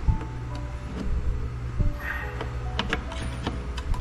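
Background music with a steady beat, with a few short clicks and taps of small parts being handled at the drive mount.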